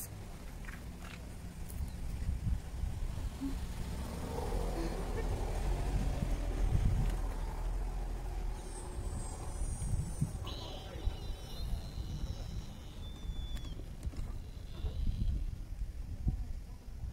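Outdoor ambience: a low rumble, strongest in the first half, with faint voices, and brief high thin whistling tones a little past the middle.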